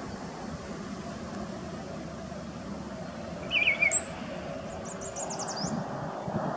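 Male brown-headed cowbird singing once, about three and a half seconds in: a few low gurgling notes run into a sharp, high rising whistle. A quick run of thin, high descending notes follows.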